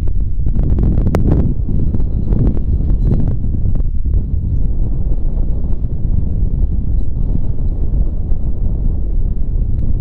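Strong gusty wind buffeting the microphone, a steady low rumble. A sharp metallic click about a second in, as the steel tube gate is handled.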